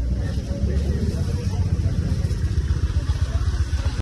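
Busy market-walkway ambience: a steady low rumble, with people's voices faint in the background.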